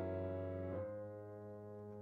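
Soft, slow piano background music: a held chord shifts to a new one about three-quarters of a second in and then fades to a quiet sustain.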